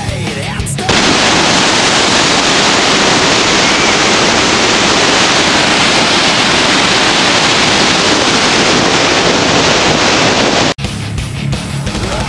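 Loud, steady rush of a large waterfall heard from close above. It cuts in about a second in and stops suddenly near the end, with rock music on either side.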